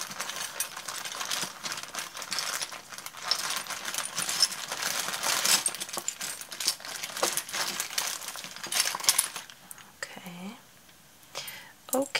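Small metal pieces and jewellery clinking and jingling inside a plastic zip bag as a hand rummages through them, with the bag's plastic crinkling. The clinking thins out about two seconds before the end.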